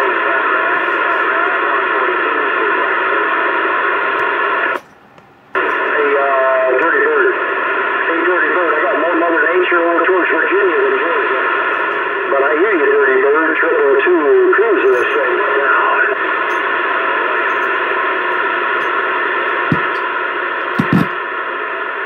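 A Uniden CB radio's speaker playing received audio: loud, steady static with garbled, unintelligible voices in it. It cuts out briefly about five seconds in, then comes back.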